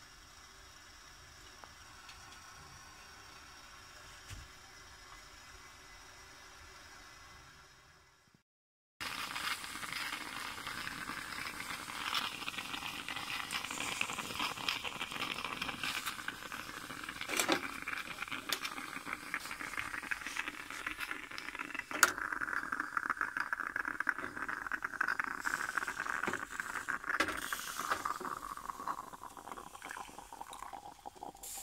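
Stainless-steel stovetop moka pot on a gas burner, sputtering and gurgling with scattered sharp pops as the boiling water forces coffee up into the top chamber. This starts about nine seconds in, after a cut, and before it there is only a faint steady hiss.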